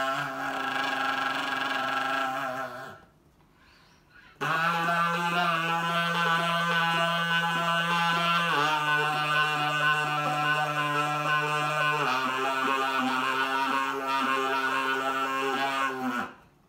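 Soprano saxophone played through a red toy kazoo attached to its neck, sounding long buzzy held notes. The notes break off about three seconds in, then resume a second and a half later as three long notes, each a step lower than the last.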